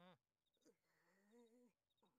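Faint, wordless cartoon-character vocalizing: a quick rising-and-falling cry right at the start, then a longer wavering hum-like sound about a second in.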